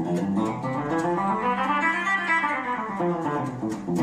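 Electric guitar picked through a run of scale notes around a chord shape, the notes ringing into one another. The run climbs in pitch to about halfway and then comes back down over a held lower note.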